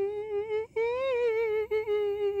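A single voice humming one held, wavering note, broken off briefly less than a second in and then resumed.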